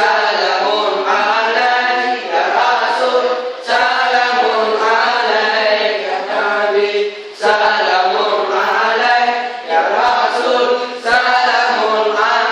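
Male voices chanting an Arabic devotional song (seulaweut) in unison with a repeating melody, with a sharp clap about every three to four seconds.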